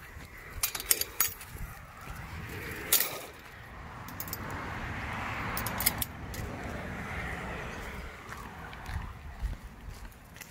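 Footsteps of someone walking outdoors, with a few sharp clicks and a hiss that swells and fades over the middle seconds.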